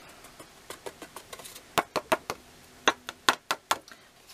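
Tub of gold embossing powder and a piece of card stock being tapped and handled while the powder is poured over the stamped card and the excess knocked off: a run of sharp, irregular taps, mostly in the second half.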